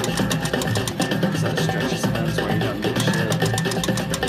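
Slot machine's free-spin bonus music: a steady, rhythmic percussive tune with many quick hits, playing while the bonus reels spin.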